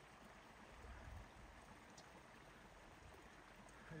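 Near silence: faint, even outdoor background noise with a soft low rumble about a second in.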